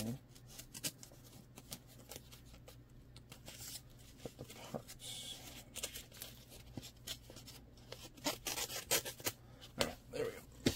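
Faint rustling and small clicks of a paper envelope being opened and handled by hand, with a short scratchy noise about five seconds in.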